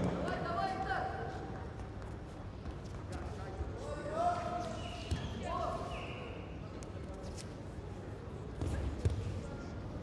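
Faint, distant shouted voices and a few dull thuds of bare feet on the judo mat as two fighters grip and move, the loudest thud shortly before the end.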